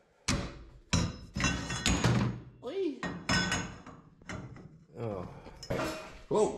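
Steel tubing knocking and clanking against a steel tube frame: about ten sharp metal knocks, several with a brief ringing.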